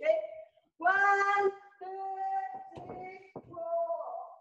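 A high voice calling out three long, held, sing-song calls, typical of drawn-out counts of drill repetitions, with a couple of short knocks between the later calls.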